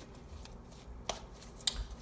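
Tarot cards being handled, with two sharp card clicks about a second in and half a second later.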